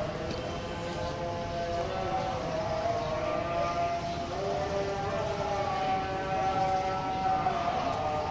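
Several overlapping, sustained wailing tones that waver slowly in pitch, like a siren.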